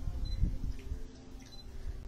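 Low rumbling noise on an outdoor phone microphone, easing after about a second, with one soft knock about half a second in.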